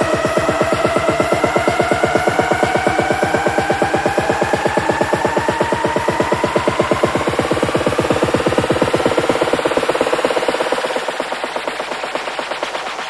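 Bass house DJ mix in a build-up: a fast, evenly pulsing drum roll under synth tones that slowly rise in pitch. The deep bass drops away shortly before the end.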